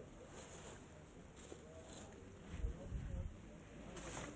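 Faint outdoor football-ground ambience: distant voices of players and people on the touchline calling out, with a brief low rumble about two and a half seconds in.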